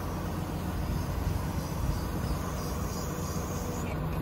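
Steady low running of the truck's 6.7 Cummins diesel engine while the Altec boom is worked by its hydraulics and moves.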